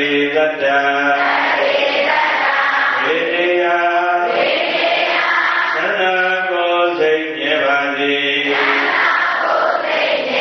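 A Buddhist monk chanting into a microphone in slow, melodic phrases, each note held long before the pitch moves on.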